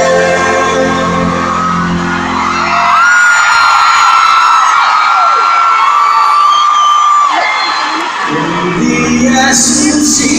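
Live pop ballad heard through a phone in the audience at an arena concert. About three seconds in the band drops away while a male singer holds one long high note for about four seconds, stepping down slightly partway. The fuller accompaniment comes back in near the end.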